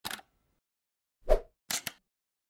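Animated intro sound effects: a brief tick at the start, a loud pop about a second in, then two quick clicks near the end.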